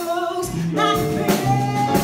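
A woman singing jazz into a microphone, holding long notes, over an upright bass and a drum kit with cymbal strokes.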